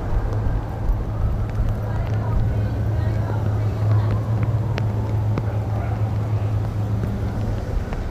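Steady low hum of idling motorcade vehicles, with indistinct voices in the background and a couple of sharp clicks around the middle.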